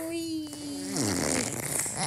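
A person's voice holding one long, slightly falling note, which about a second in slides steeply down into a rough, sputtering noise.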